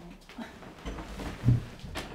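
A man's short, wordless groan about a second and a half in, with a click from a door handle near the end.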